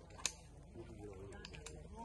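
A sharp click about a quarter second in, then a few lighter clicks later on, over faint voices.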